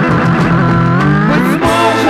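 An instrumental passage from a 1983 Soviet rock band's studio album, with no singing. About a second in, several tones glide upward together before the music settles again.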